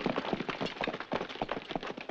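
Horse hooves and running footsteps on stony ground: a dense, irregular clatter of short knocks.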